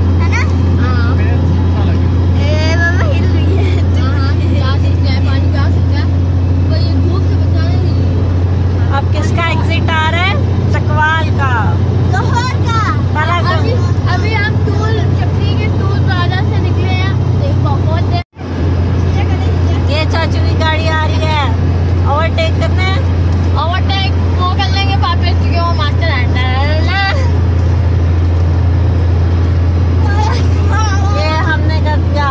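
Steady low drone of a car cabin at motorway speed, with voices chattering over it. The sound cuts out abruptly for an instant about eighteen seconds in.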